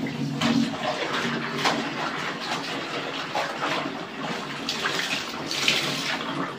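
Wet clothes being lifted, sloshed and dropped by hand in a plastic basin of soapy water, with irregular splashes and water streaming off the fabric; a louder splash comes near the end.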